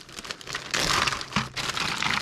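Clear plastic zip-top bag crinkling as it is handled and pulled open, louder from a little under a second in.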